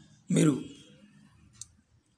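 A single short spoken syllable, then a faint sharp click about a second and a half in.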